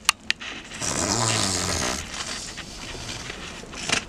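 Gas escaping from a mare's rectum around a vet's palpating arm during a rectal exam: a loud hissing "pppshhh" with a low buzzy flutter, lasting about a second, starting about a second in. Plastic palpation sleeve rustling and clicking around it.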